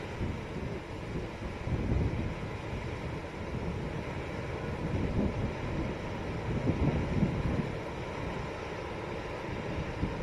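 Water pouring through a dam's open spillway gates and rushing down the spillway face: a steady low rushing noise that swells and eases slightly.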